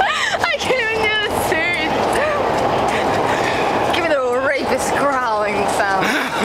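People's voices calling out in drawn-out, wavering shouts several times, over a steady haze of street noise.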